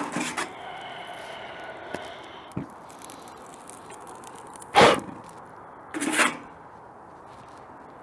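Metal pizza peel scraping against the hot baking surface of a gas broiler as a pizza is slid in and out: two short, loud scrapes about a second apart, midway through.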